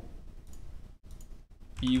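Faint clicking from a computer being operated at a desk, with a man's speech resuming near the end.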